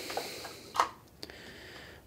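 Plastic case of a small switch-mode power supply being pulled open by hand. There is faint handling rustle, one short sharp click a little under a second in as the cover comes free, and a smaller click after it.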